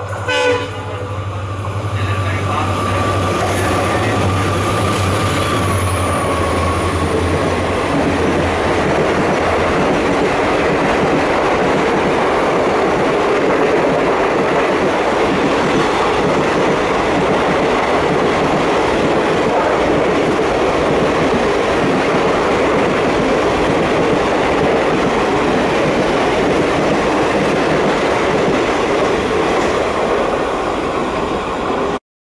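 EMD WDP4B diesel locomotive (16-cylinder two-stroke engine) passing at speed. It gives a brief horn blast at the very start, then a deep engine hum with a higher whine that fades over the first eight to ten seconds. After that comes the steady loud rush and wheel clatter of express coaches running past close by.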